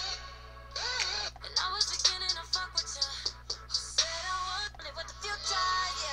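Pop song playing, with processed female group vocals over a drum beat that comes in about a second and a half in.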